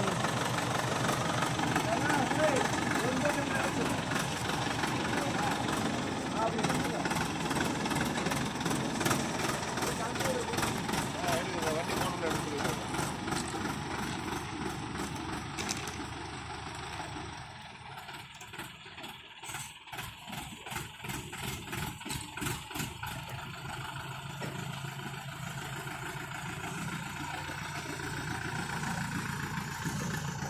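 A mobile crane's diesel engine running as it holds an overturned pickup truck up in its slings, with people talking over it through the first half; the sound drops and grows quieter a little past the middle.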